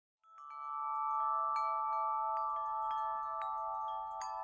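Wind chimes ringing: about eight uneven strikes, each adding a high ringing tone to several that keep sounding together. The sound swells in over the first second.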